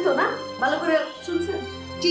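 Speech over background music: a woman's brief reply, its pitch rising at the start, with steady sustained music tones beneath.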